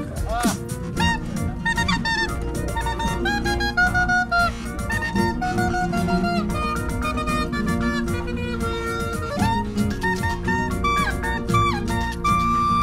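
Clarinet played live, a quick melody of short stepping notes in a Balkan style, over a recorded electronic backing track with a steady beat.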